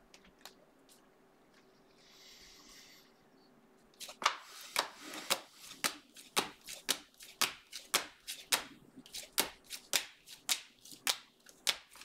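Panini Prizm football trading cards flipped through by hand one at a time, a sharp card flick about twice a second, starting about four seconds in.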